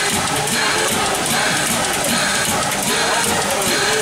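Steam locomotive standing with steam hissing loudly and a regular pulsing a little faster than once a second.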